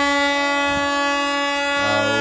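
Train horn sounding one long, steady blast.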